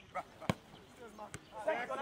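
A football kicked twice, two sharp knocks a little under a second apart, the first the louder.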